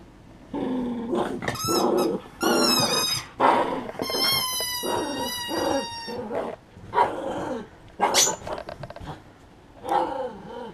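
Small poodle growling and barking in play over a rubber toy, with several high, wavering squeals, the longest lasting about two seconds from about four seconds in, and sharp barks near the end.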